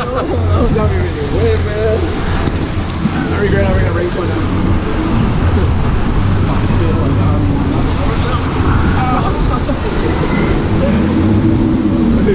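Rushing, churning water of a river rapids raft ride with steady wind noise on the microphone, and indistinct voices of riders now and then.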